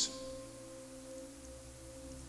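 Soft background music: a quiet held chord of steady tones, sounding on its own in a pause between sentences.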